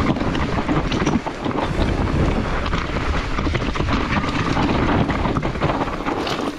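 Wind buffeting the microphone and the tyres of a Specialized Turbo Levo Gen 3 e-mountain bike rumbling over a dirt forest trail at speed, with many short knocks and rattles from the bike over roots and bumps.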